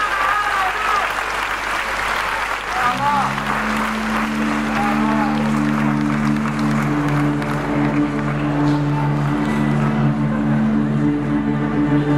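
Audience applauding and cheering after a spoken appeal from the stage. About three seconds in, the band comes in under the applause with a low, steady held chord.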